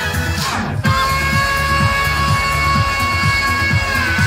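Saxophone played live over a loud electronic dance backing track with a steady kick-drum beat. About a second in, after a falling sweep, a long note is held to the end.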